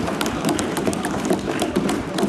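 Applause from a group of people clapping, a dense patter of hand claps with some voices mixed in.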